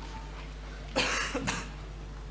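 A man coughs close to a microphone about a second in: one short, harsh cough in two quick bursts.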